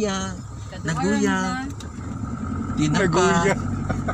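Vehicle running, heard from inside the cabin: a steady low engine and road drone, clearer in the second half, under people's voices.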